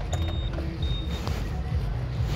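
Street traffic: a steady low rumble of passing engines, with two short high-pitched beeps in the first second.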